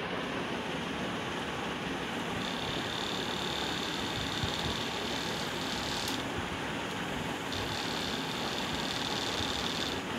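Small brushed DC hobby motor running on a 5 V transformerless capacitive-dropper supply: a steady whirr with a thin high whine that comes in a couple of seconds in, drops out around six seconds and returns.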